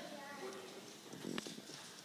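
Faint, indistinct voices in a quiet room, with a few light taps and one sharp click about a second and a half in.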